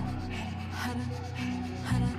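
Powerful open-mouth pranayama breathing through an O-shaped mouth, inhales and exhales of equal force in a steady rhythm of about two breaths a second, over background music.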